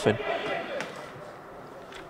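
A male commentator finishes a word, then a pause filled only by faint, even background noise, with one faint click about a second in.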